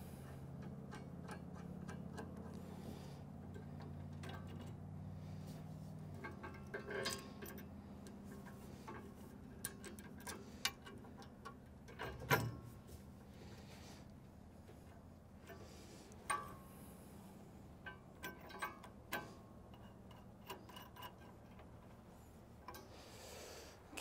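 Faint, scattered small metallic clicks and taps of bolts and washers being handled and fitted by hand, the sharpest about halfway through. A low steady hum sits under the first few seconds.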